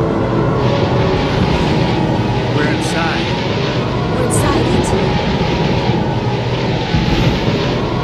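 Tornado sound effect: a loud, steady roar of rushing wind over a deep rumble.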